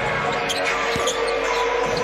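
Basketball dribbled on a hardwood court: a couple of sharp bounces about half a second apart, over the steady din of an arena crowd.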